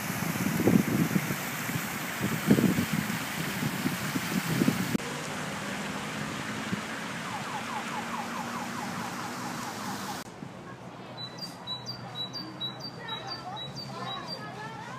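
City ambience in three cuts: water splashing in a fountain, then street traffic with a brief wavering whine, then a run of short, high chirps from small birds.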